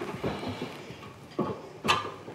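A fork taps and scrapes against a plate while beating a raw egg into a mixture of chopped herbs and meat. There are a few light clicks, then two sharper clinks in the second half, the later one the loudest.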